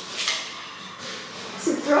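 A woman's voice: a short breathy sound just after the start, then she begins to laugh near the end.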